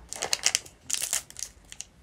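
Plastic snack pouch crinkling in the hands as a chewy jelly is taken out: a run of quick crackles, densest in the first second and a half and sparser after.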